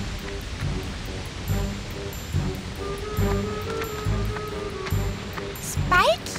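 Background score music with low, regular beats over the steady rush of a waterfall.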